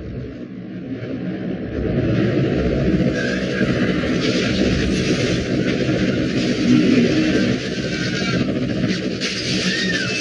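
Air ambulance helicopter's rotor and turbine engine noise as it comes in to land, growing louder about two seconds in.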